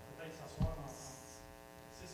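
Steady electrical mains hum on the sound system, with one sharp low thump about halfway through and faint murmured voices.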